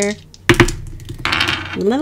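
Tarot cards being handled on a table: a sharp clack about half a second in, then a brief rustle as another card is drawn.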